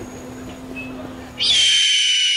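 Film sound effect: a faint low hum, then about one and a half seconds in a sudden loud, high-pitched ringing tone that holds and sinks slightly in pitch.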